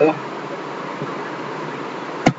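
Steady buzzing background noise in the recording, with the tail of a spoken word right at the start.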